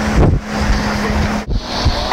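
Wind buffeting the microphone and road noise from a moving vehicle, a loud, rough rumble with a faint steady hum under it.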